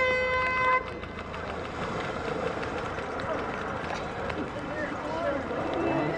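Race starting horn sounds once, a steady tone lasting under a second that cuts off sharply. It is followed by a steady wash of crowd noise and splashing as the swimmers dive in and start swimming.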